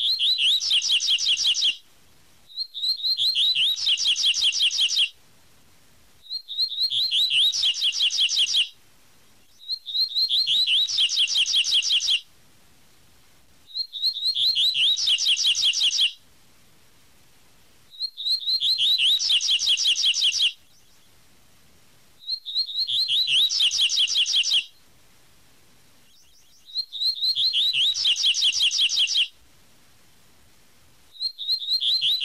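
Double-collared seedeater (coleiro) singing its 'tui tui' song: high, fast runs of repeated notes, each phrase about two seconds long, given again and again with short pauses in between.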